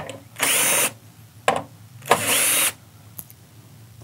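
Cordless drill/driver backing hinge screws out of the storefront door frame, running in two short spurts of about half a second each, with a brief blip between them.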